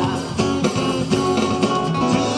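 Live acoustic band playing an instrumental stretch: strummed acoustic guitars over bass guitar and drums, with no singing.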